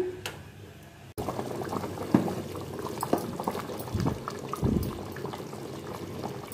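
A pot of fish curry (meen kuzhambu) bubbling as it boils, with a steady run of small bubble pops starting about a second in. A few soft low thuds come in the second half.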